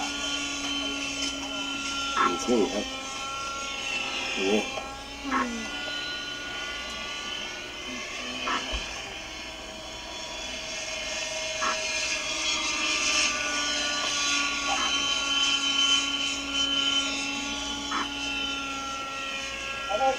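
Model helicopter in flight, its O.S. 61 glow engine and rotor making a steady whine whose pitch drifts slightly as it manoeuvres, with a few short sounds over it.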